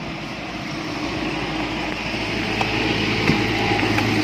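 Stihl MS 660 chainsaw's large two-stroke engine idling steadily, growing slightly louder.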